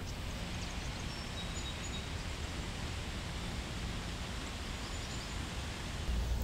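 Steady outdoor background noise, an even hiss with no distinct event, and a few faint high chirps about half a second to a second in.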